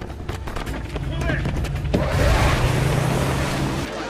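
Film soundtrack: a low steady drone under faint voices, then about halfway through a loud rushing hiss swells over it and cuts off suddenly.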